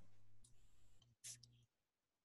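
Near silence: a faint low hum with two faint clicks in the first second and a half, then the sound cuts off to dead silence.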